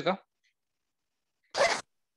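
Dead silence, then one short rush of noise, about a third of a second long, a second and a half in, just before the talking resumes.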